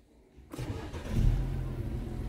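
Fiat Argo HGT 1.8's naturally aspirated four-cylinder engine started by push button, heard from inside the cabin: about half a second in it turns over and catches, flares up briefly, then settles into a steady idle.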